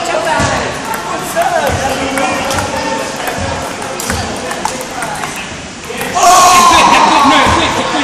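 Table tennis ball clicking off bats and the table during a rally, under the talk of many voices in a large hall. About six seconds in, loud shouting breaks out over it.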